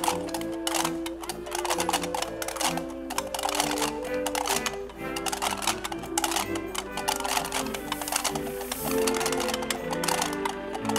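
A wind band playing: held notes in the low and middle range under a busy run of sharp clicking percussion strokes.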